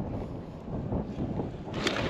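Wind buffeting the microphone, an uneven low rumble, with a sharp click near the end.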